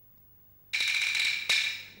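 Peking opera percussion comes in suddenly under a second in: a bright metallic ringing with a sharp wooden click about half a second later, then fading.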